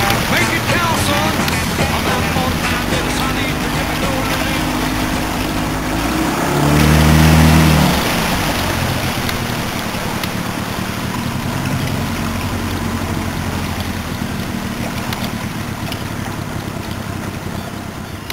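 A small boat's motor running steadily as the boat moves, with water rushing along the hull. About six and a half seconds in it revs up briefly and is at its loudest, then settles back.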